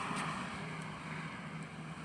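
Faint, steady outdoor background noise: a low hum with a light hiss and no distinct events.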